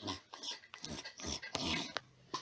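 A child's voice imitating a dog chewing, a run of short, irregular mouth noises.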